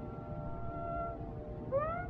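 Carnatic music in raga Mukhari from an old radio recording: a long held note that fades out, then a note sliding upward near the end. A steady low hiss from the recording runs underneath, and no percussion is heard.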